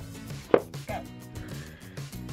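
A single sharp knock about half a second in, a book knocking against the shelf as it is pushed back into place, over quiet background music.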